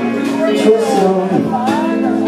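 A man singing into a microphone while strumming an acoustic guitar, in a live performance.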